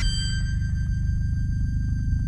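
Electroacoustic tape music: a dense, fast-pulsing low drone with several steady high tones held above it.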